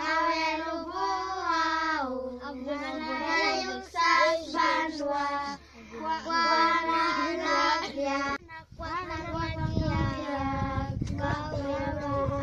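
A small group of young Taubuhid girls singing a song together in unison, unaccompanied. About eight seconds in the singing breaks off briefly, then resumes with a low rumble underneath.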